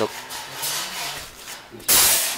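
Rubbing and rustling handling noise at the phone's microphone while a pigeon is held against it. A loud, sudden burst of rustling comes right at the end as the camera and bird are moved.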